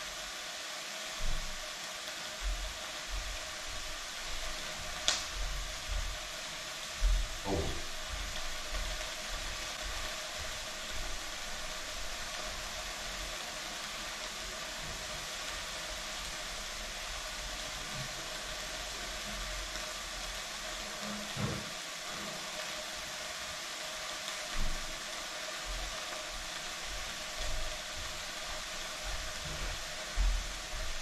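Steady hiss from a pot heating on an electric hot plate, with a few soft knocks scattered through it.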